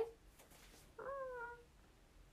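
A house cat meowing once, about a second in: a single short call that rises and then falls slightly.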